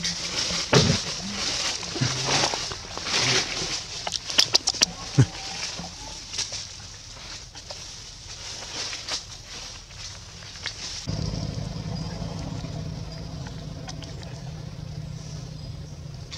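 Outdoor forest sounds: a steady high hiss with scattered clicks, rustles and a few short voice-like sounds. About eleven seconds in, where the footage cuts, a steady low hum sets in abruptly.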